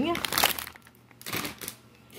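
Plastic food packaging crinkling and rustling as grocery packets are handled and moved, in two short spells.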